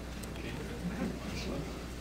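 Quiet hall ambience with a steady low hum and faint, indistinct voices murmuring in the background.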